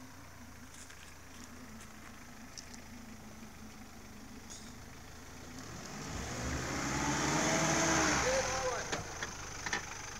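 Second-generation Mitsubishi Pajero (Shogun) 4x4 engine running low and slow as the vehicle crawls off-road into a deep dirt rut. About six seconds in it revs up under load, and it falls away again near nine seconds.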